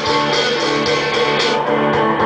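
Live concert music from a band, led by strummed guitar chords over sustained notes.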